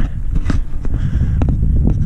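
Wind rumbling on the microphone of a camera carried along a hiking trail, with a few soft footfalls.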